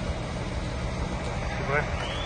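Large coach bus engine idling, a steady low rumble.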